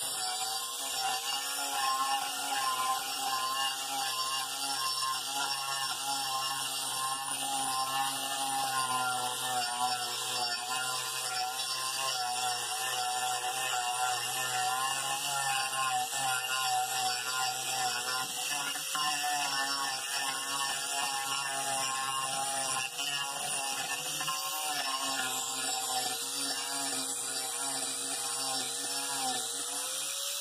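Angle grinder fitted with a coarse 24-grit carbide disc grinding down the rough chainsaw-cut face of a wooden plank. A continuous motor whine that wavers slightly in pitch as the disc bears on the wood.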